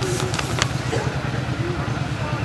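A pause in the amplified reading, filled with a steady low hum from a running motor, with a few faint ticks.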